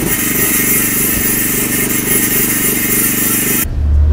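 Angle grinder with a sanding disc grinding engraved lettering off a stone memorial slab, a steady hiss with a generator engine running underneath. The sound breaks off sharply shortly before the end.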